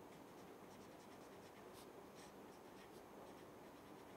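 Faint scratching of a marker pen writing on paper, a string of short strokes.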